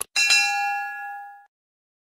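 Notification-bell chime sound effect: a bright ding of several tones that rings and fades out over about a second and a quarter, straight after a mouse click.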